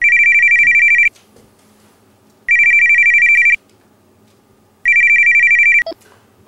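Mobile phone ringing with an electronic trilling ring: three rings of about a second each, spaced about two and a half seconds apart, with a brief click just after the last.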